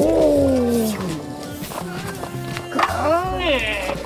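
Two roar-like calls over background music: the first loud and falling in pitch over about a second, the second near the end rising and then falling.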